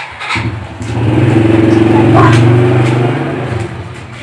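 An engine running loudly close by, with a steady low hum. It comes in about a third of a second in, swells to its loudest around the middle, then fades away near the end.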